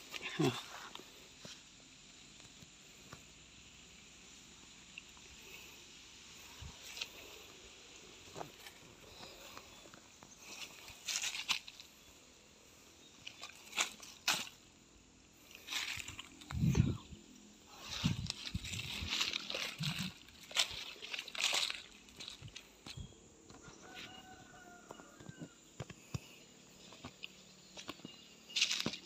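Scattered rustling and crackling of dry leaf litter and undergrowth, in irregular bursts through the middle of the stretch, as someone moves about among the fallen fruit.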